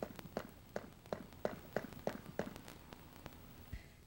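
Light, regular taps of a rubber mallet driving a ridged elbow fitting into the end of a polyethylene sprinkler pipe, about three a second, stopping about three seconds in with one last tap near the end.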